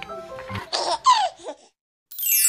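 A young girl laughing in a few short bursts that fall in pitch, over background music that stops about half a second in.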